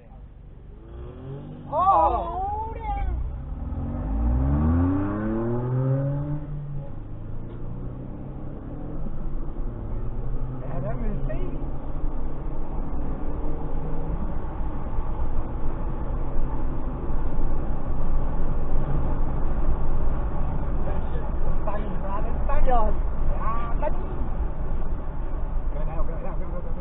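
Car engine pulling away from a standstill, its pitch rising as it accelerates, then settling into a steady low drone with road and tyre noise as it cruises, heard from inside the car.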